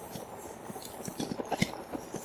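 Fat-tyre electric bike rolling over rough mown grass: a low rumble with irregular knocks and rattles from the frame and handlebar gear as it bumps along, coming more often in the second second.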